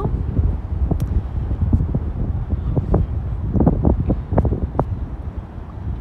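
Breeze buffeting the microphone: a low, fluctuating rumble, with a few faint short sounds in between.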